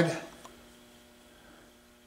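Faint steady electrical hum with a few level tones, heard after a man's voice trails off at the very start.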